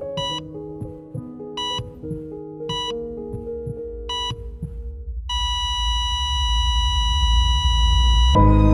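Heart-monitor sound effect beeping about once a second over soft sustained music, then switching to one steady flatline tone about five seconds in, with a low rumble building underneath.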